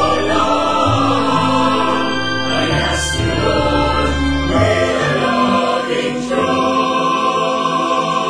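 Music: a choir singing a hymn in long held notes.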